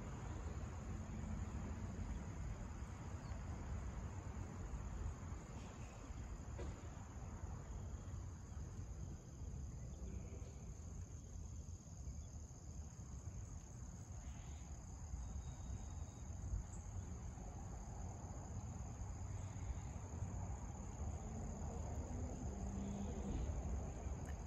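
Crickets chirping in a steady, high-pitched chorus over a low rumble.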